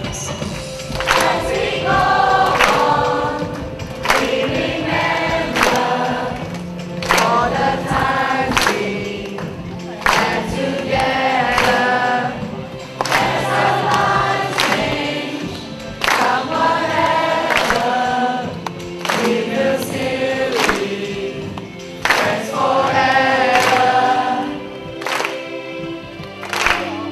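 A group of voices singing a song together over a steady beat of about one beat a second.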